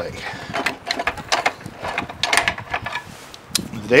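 Metal parts of a Gravely C8 tractor's high-low planetary assembly clicking and clinking against each other and the transmission housing as the assembly is worked out by hand: a string of short, sharp clicks.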